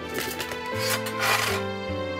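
Background music over a dry rustling scrape, loudest about a second in, of cypress wood shavings being scooped out of a metal basin to feed a smouldering smoker fire.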